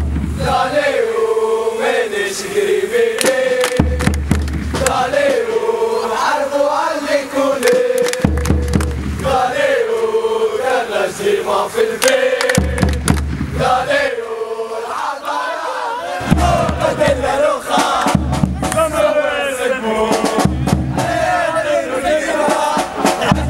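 Ultras chant sung in unison by a crowd, a melodic phrase repeating about every four seconds, with a deep bass at the start of each phrase.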